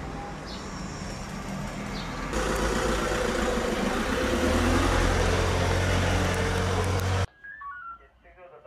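Outdoor street ambience with a couple of short bird chirps. About two seconds in, a van's engine comes in, running steadily close by with a low hum, and cuts off suddenly near the end.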